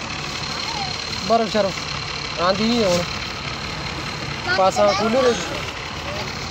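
Short bursts of voices inside a crowded bus, over the steady sound of the bus's engine idling.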